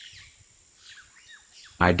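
Faint short chirps in a near-quiet lull, then a synthesized voice starts speaking near the end.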